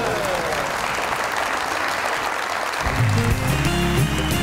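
Applause. About three seconds in, a bass-heavy music sting cuts in and carries on.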